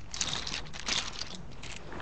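Plastic Bakugan toys clicking and rattling against each other as a hand rummages through a pile of them, in several short bursts.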